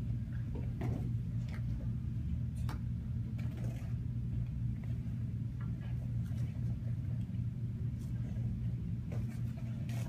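A steady low hum, with a few faint taps and knocks scattered through it.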